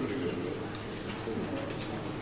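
Low, indistinct murmur of voices in a hall, with faint rustling.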